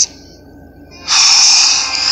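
A cartoon man's long, breathy exasperated sigh, starting about a second in after a brief lull, heard through a TV speaker.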